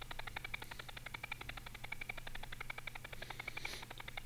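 Audio scrubbing in a video editor: the recorded track of the duck footage played back a frame at a time at extreme slow motion, heard as a faint, rapid, even stutter of about a dozen pulses a second, like a motorboat.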